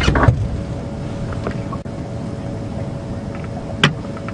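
Safari vehicle's engine idling: a steady low rumble with a steady hum over it. A brief voice sounds at the very start, and a short sharp click comes near the end.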